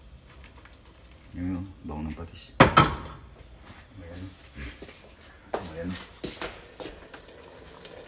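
Indistinct voices talking, with one sharp knock about two and a half seconds in and a few lighter clicks later.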